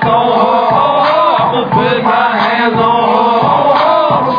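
Loud live hip-hop music with many voices chanting along.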